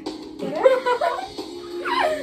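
Whimpering, whine-like cries that bend up and down in pitch, ending in a quick falling squeal near the end, over steady background music.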